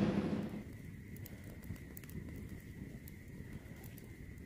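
Wood campfire crackling quietly, with sharp little snaps now and then over a low steady rumble. A louder noise fades out in the first half second.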